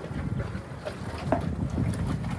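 Wind buffeting the microphone outdoors, a low, irregular rumble.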